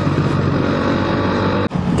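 Motorcycle engine running at a steady pitch while riding, with wind rushing over the onboard microphone; the sound cuts off abruptly shortly before the end.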